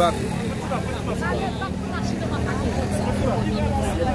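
Voices talking in the background over a steady low hum of an idling vehicle engine.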